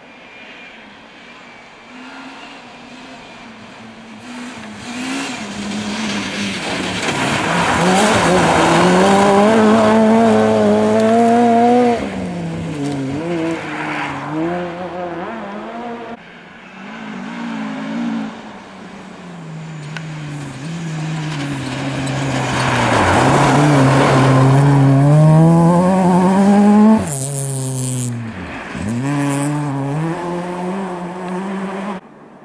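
Rally car engine driven hard on a snow stage, its pitch climbing and dropping with each gear change. It passes loudly twice, once around ten seconds in and again near the end, before the sound cuts off suddenly.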